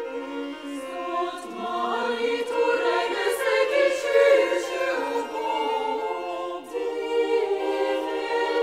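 Chamber choir singing slow, sustained chords, several voices held together. The sound swells in the middle, dips briefly near the end, then picks up again.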